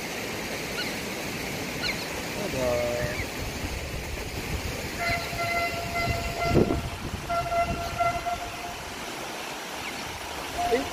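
SMRT C151A metro train's horn sounding from about five seconds in for some three and a half seconds, a steady pitched tone with one short break. A brief low thud comes partway through the horn, and faint bird chirps come before it.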